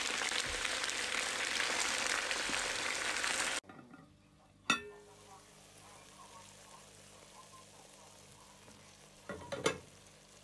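Food sizzling and crackling as it fries in oil in a pot. The sizzle cuts off suddenly about a third of the way in. After that it is quiet apart from one sharp click and a short run of knocks near the end.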